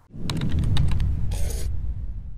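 Logo-animation sound effect: a low rumble under a run of quick sharp clicks, with a short hiss about one and a half seconds in, then fading away.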